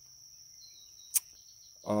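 Faint, steady high-pitched insect chirring outdoors, with a single sharp click about a second in that is the loudest sound.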